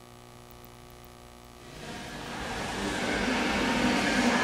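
Faint steady hum, then a rushing noise that swells steadily louder from a little before halfway through.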